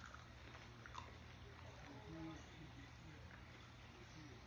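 Faint biting and chewing on a raw Hungarian wax pepper, with a few small clicks, over a low steady room hum. A brief faint murmur of a voice comes about two seconds in.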